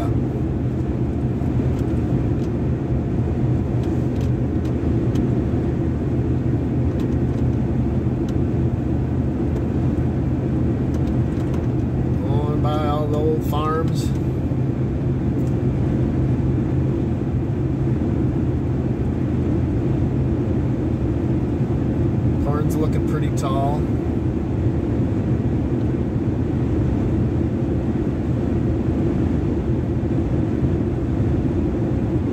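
Steady road and engine noise inside a pickup truck's cab while it cruises at highway speed on a smooth road.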